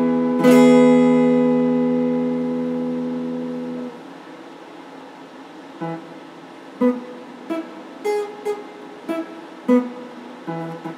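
Electric guitar played solo: a chord struck about half a second in rings out and fades, then is muted just before four seconds. After a short pause, sparse single picked notes follow, one every half-second to second.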